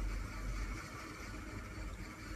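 Low steady hum with a faint hiss: background noise of the recording.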